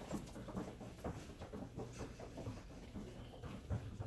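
Soft, irregular footfalls of children running barefoot on hallway carpet, over a low steady hum.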